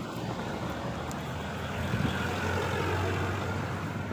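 Road traffic: a passing vehicle's engine drone over general street noise, growing louder about two seconds in and easing off near the end.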